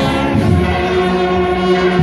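Spanish banda de cornetas playing: bugles sound held chords over a low brass bass note, the notes sustained rather than short.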